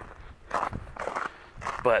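Footsteps on wet, thawing lake ice and mud, a few short steps, with a man's voice starting near the end.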